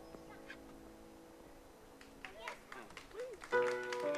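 The last chord of an upright piano and acoustic guitar rings out and fades. About two seconds in, scattered hand claps and whoops from onlookers start, getting louder near the end.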